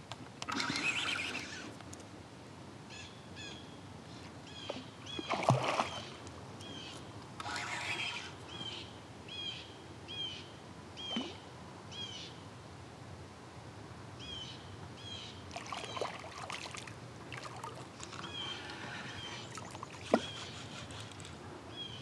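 A bird calls over and over in short, high notes that dip at the end, about two a second, with a pause in the middle. A few louder bursts of noise break in, the loudest about five seconds in.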